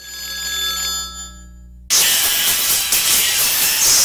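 A ringing, bell-like tone over a low hum. About two seconds in, a sudden loud burst of hiss like static takes over and is the loudest sound.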